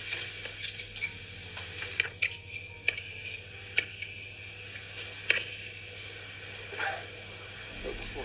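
Loose rock and grit clicking and knocking in small irregular taps and scrapes, about a dozen, the sharpest about five seconds in, over a faint steady hum.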